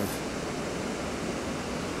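Steady, even rushing background noise with no distinct events in it.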